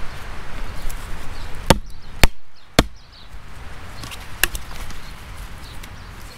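Wood knocking on wood as stick legs are seated into the holes of a small split-log tabletop: three sharp knocks about half a second apart, then one more, after a stretch of handling and rustling.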